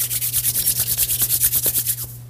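Hands rubbed quickly together close to the microphone, a fast, even run of about eight rubbing strokes a second.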